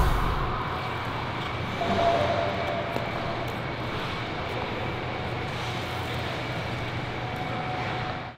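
The tail of the program music cuts off at the very start, leaving the steady hum of an indoor ice rink's air-handling machinery, with faint scrapes of skate blades on the ice.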